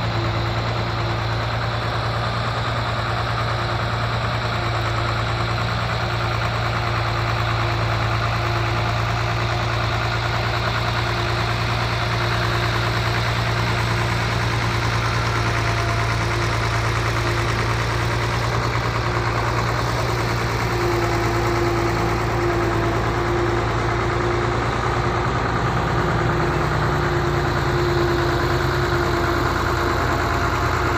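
Diesel engines of heavy earthmoving machinery, a padfoot soil-compacting roller with an excavator behind it, running steadily as a constant low drone. The pitch shifts slightly about three-quarters of the way through.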